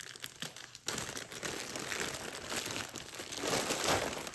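Clear plastic packaging bag crinkling as it is cut open with scissors and pulled off a woven rope basket; a few faint snips and crackles at first, then dense crinkling from about a second in.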